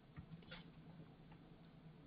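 Near silence with a few faint ticks in the first second or so, fitting a computer mouse's scroll wheel as a web page is scrolled, over a faint steady hum.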